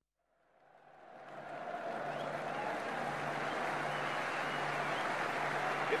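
Football stadium crowd noise fading in over about a second and a half, then holding steady as a dense murmur of many voices.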